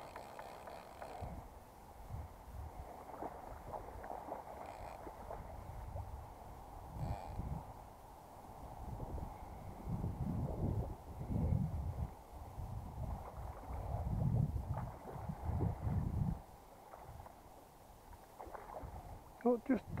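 Steady rush of a fast-flowing river with irregular low rumbling gusts, strongest in the second half, typical of wind buffeting a body-worn camera's microphone. A short spoken word comes right at the end.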